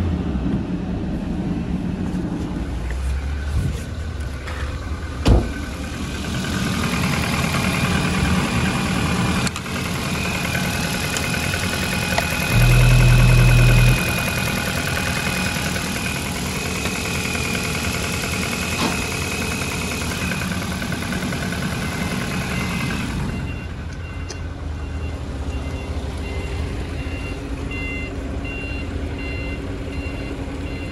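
A Volvo S40's 1.6-litre four-cylinder petrol engine (B4164S3) running at idle. A steady high whine joins in for a stretch in the middle, and a loud low hum lasts about a second and a half. Near the end, a steady run of quick high beeps like a reversing alarm sounds over the idle.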